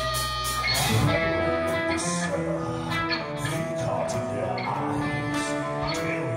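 Heavy metal band playing live: electric guitars holding sustained notes that change every half second or so, over bass and drums with repeated cymbal hits.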